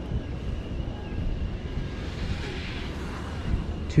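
Wind rumbling on the microphone while riding an open chairlift, with a faint steady high whine underneath and a soft gust of hiss swelling a little past halfway.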